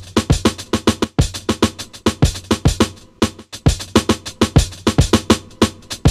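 An electronic drum loop playing back from a sampler: a fast, even run of drum hits, about seven a second, many of them low hits that drop in pitch, over a steady low bass tone.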